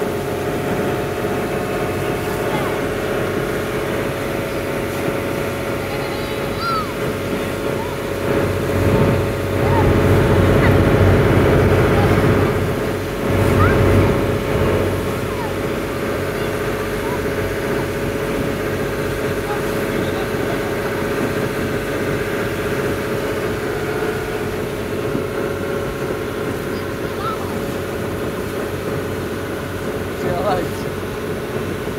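A charter fishing boat's inboard engine running steadily under way, a constant drone over the wash of the water. A louder low rumble swells for a few seconds near the middle.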